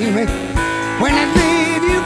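Modern electric blues band recording playing a passage without words: lead notes that bend and waver over a bass line and a steady drum beat.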